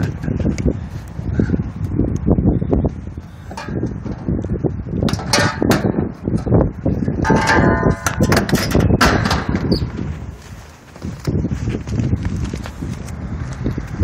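Irregular clanking, knocking and rattling of sheet metal as a condenser unit's top fan grille, with the fan motor and blade hanging from it, is worked loose and lifted off, with a brief metallic ring partway through.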